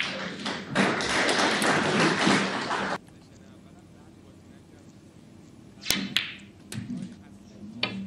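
Crowd applause in an arena for about two seconds, cut off abruptly. A quieter stretch follows, with two sharp clicks of snooker balls striking near the end.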